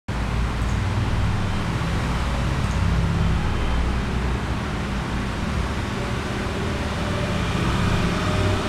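Steady low hum with an even hiss over it, unbroken throughout: constant background noise of a motor, fan or electrical hum, with no distinct events.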